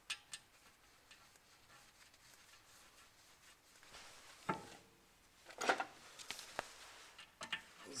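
Scattered light metallic clicks and clinks from handling a new brake disc on the wheel hub and fitting its small retaining screw, with the loudest cluster of clicks about six seconds in.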